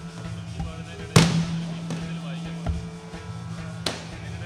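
Aerial fireworks shells bursting: a loud bang about a second in with a long echoing tail, then another sharp bang near the end.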